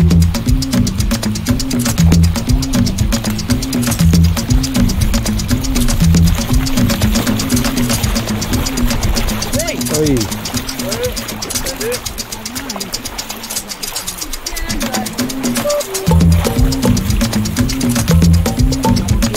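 Dub instrumental: a repeating bass line under a steady, busy percussion pattern, with short gliding sounds over the top near the middle. The bass drops out about twelve seconds in and comes back about four seconds later.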